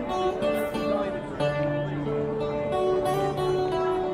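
Busker playing an acoustic guitar, a melody of single notes changing every second or so over lower bass notes.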